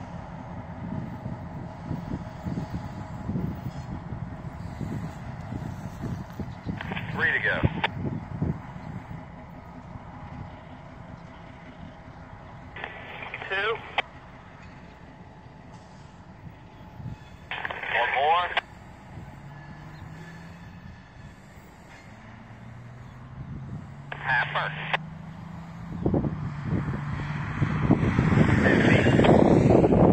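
An EMD MP15 diesel switcher's engine rumbles as the locomotive moves away, with a steady engine drone later on. Short bursts of tinny railroad radio chatter from a scanner break in every few seconds. Wind buffets the microphone near the end.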